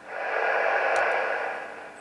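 ICOM IC-706MKIIG transceiver's speaker giving a steady hiss of receiver noise in upper sideband. The hiss swells in and fades toward the end. It shows the receiver is alive again after the PLL repair.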